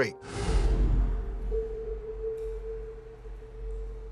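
Sound-design whoosh with a deep rumble swelling in just after the start and fading over about a second, followed by a single steady held tone, a low drone of the kind laid under TV narration.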